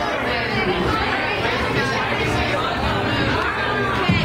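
Chatter of many people talking at once in a busy restaurant dining room, a steady babble of overlapping voices.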